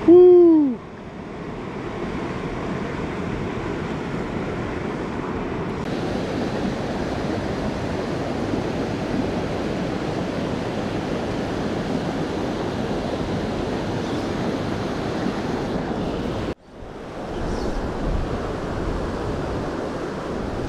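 Steady rush of a shallow river running over riffles, with some wind on the microphone. Right at the start, a short, loud human whoop that falls in pitch is the loudest sound. Near the end the sound cuts out for an instant and resumes.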